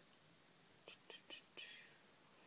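A woman whispering under her breath: four short, faint, breathy sounds in quick succession about a second in, against near silence.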